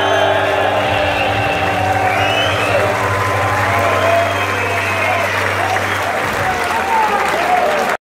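Concert audience applauding, cheering and whistling at the end of a rock song. Under the applause the band's last chord rings on from the amplifiers and stops about six seconds in.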